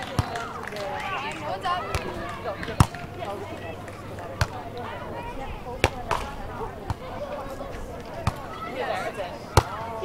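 Volleyball struck by players' hands and forearms during a beach volleyball rally: several sharp slaps spaced irregularly, the loudest about three seconds in and near the end, with voices talking in the background.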